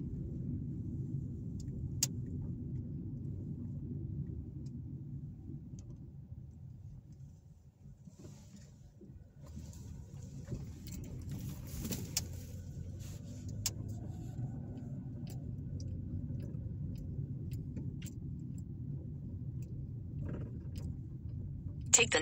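Car driving at low speed: a steady low rumble of tyres and engine that eases off to a lull about a third of the way in, then builds back up.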